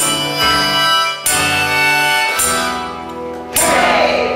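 Live acoustic guitar strummed, with held melody notes over it; three hard-struck chords fall about a second apart.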